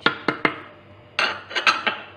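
A metal spoon clicking and scraping against a plastic blender jar as sugar and ground coffee are spooned in: a few sharp taps near the start, then a brief cluster of clinks and scraping about a second in.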